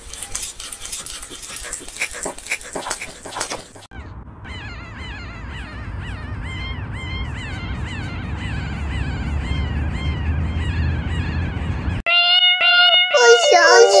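A puppy chewing hard food with crisp, crunching clicks for about four seconds. Then newborn puppies crying: a run of short high squeals, each falling in pitch, several a second. Music with singing comes in near the end.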